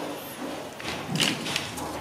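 Hard plastic parts of a toy shopping trolley knocking and clicking as they are handled and pressed together: a few short sharp knocks in the second half, the loudest just past the middle.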